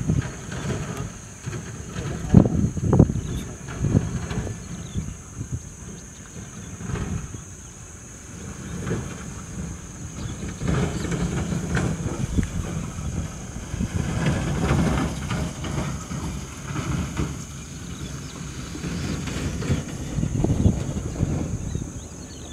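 Wind buffeting the microphone: an irregular low rumble that comes and goes in gusts, loudest about two to three seconds in, over a steady faint high hiss.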